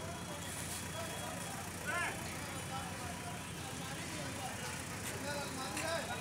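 JCB backhoe loader's diesel engine running steadily under the scattered voices of men nearby, with one short raised call about two seconds in.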